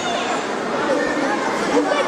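Crowd chatter: many overlapping voices of spectators talking and calling out at once, with no single voice standing out.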